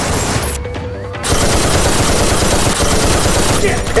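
Rapid automatic gunfire, a dense volley of shots starting about a second in and lasting over two seconds.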